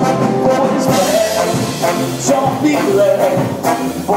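Ska band playing live: saxophone and trombone carry a melody over organ, electric guitar, bass and drums with a steady ska beat.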